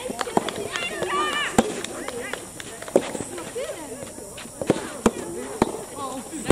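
Soft tennis rackets striking the soft rubber balls in rallies, sharp pops at uneven gaps of roughly half a second to a second and a half, six in all. A player's voice calls out briefly about a second in.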